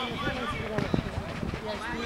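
Indistinct voices of players and spectators carrying across an outdoor football pitch, with one short knock near the middle.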